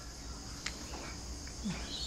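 Quiet background with a steady high-pitched insect sound, such as crickets, and a single faint click about two-thirds of a second in.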